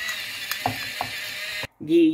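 Handheld pepper mill grinding black peppercorns: a steady grinding with a few sharp clicks, which stops abruptly near the end.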